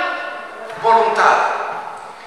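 A man preaching into a microphone in a large hall: one short spoken phrase about a second in, between pauses.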